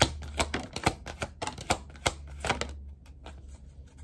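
A tarot deck being shuffled by hand: a quick, irregular run of card snaps and clicks that thins out about three seconds in.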